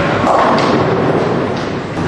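Bowling ball set down on the wooden lane with a heavy thud, then starting to roll, in a noisy bowling alley; a few more sharp knocks follow.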